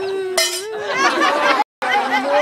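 A coin dropped into a small metal pail: one short clink about half a second in, over children's voices.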